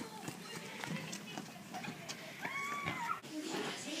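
Faint running footsteps of children moving off across grass and bark chippings, heard as scattered light ticks. About two and a half seconds in, a short faint call is heard.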